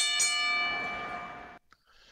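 A ring bell struck about a fifth of a second in, right after a first strike, ringing with several steady tones and fading, then cut off suddenly about a second and a half in.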